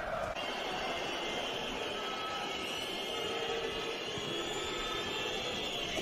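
Steady crowd noise from the stadium stands during play, an even murmur with no single event standing out.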